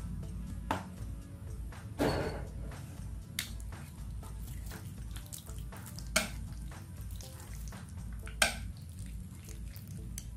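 Chopsticks clicking and scraping against a ceramic plate now and then as they toss raw duck pieces in a marinade of oyster sauce and ginger. There are a few separate sharp clicks, the loudest one about eight and a half seconds in.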